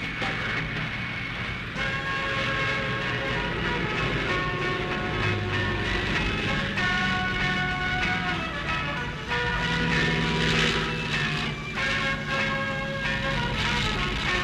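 Newsreel background music of held notes that change every second or two, over the steady drone of a light single-engine propeller aircraft flying past.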